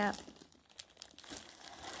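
Faint crinkling of a clear plastic zip-top bag as a hand holds and squeezes it.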